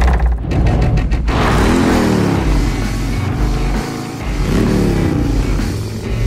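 Trailer music opening on a loud hit, with a motorcycle engine revving up and falling back twice, about three seconds apart.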